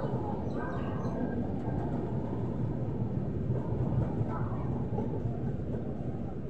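Ashram Express passenger coaches running past on the track, a steady rumble of wheels on rail.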